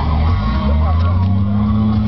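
Jeep Wrangler TJ engine running under load as the rig crawls over boulders, its pitch stepping up a little past halfway as it revs and then holding steady. Voices are heard alongside.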